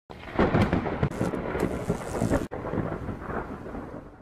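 Thunderstorm: a deep rumble of thunder with sharp cracks over rain noise. It breaks off briefly about halfway, then resumes and fades near the end.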